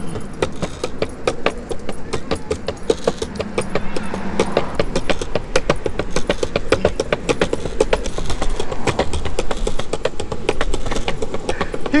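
Skateboard wheels rolling along a concrete sidewalk: a steady rumble crossed by a quick, irregular run of clicks and rattles.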